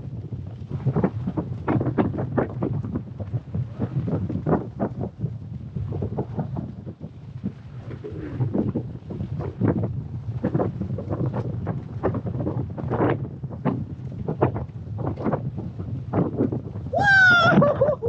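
Wind buffeting the microphone, a continuous low rumble broken by irregular gusty thumps. About a second before the end, a voice calls out loudly and briefly.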